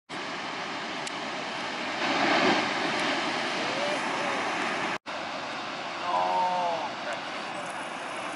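Steady roar of heavy surf, swelling a little near the start, with a few brief snatches of people talking; the sound breaks off for an instant about halfway through.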